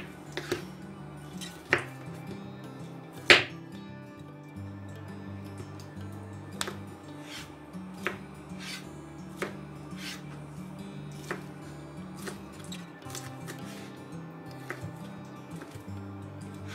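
A kitchen knife chopping ham into cubes on a wooden cutting board: irregular sharp knocks of the blade reaching the board, the loudest a little over three seconds in. Soft background music plays throughout.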